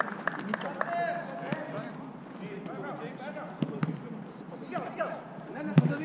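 Players' voices calling across a small-sided football pitch, with running footsteps on artificial turf and a few sharp knocks of the ball being kicked, the loudest near the end.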